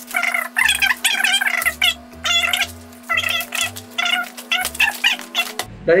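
Fast-forwarded speech, high-pitched and chipmunk-like, over background music with a steady low tone and a short repeating bass line.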